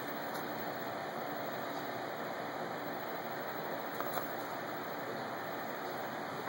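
Steady low background hiss with no distinct source, and one faint click about four seconds in.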